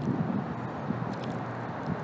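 Steady background hiss with a few faint ticks, no distinct sound events.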